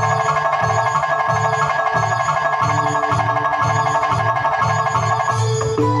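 Live band playing an instrumental passage: an electronic keyboard plays rapid repeated mallet-like notes over a steady drum beat. A lower melody line comes in near the end.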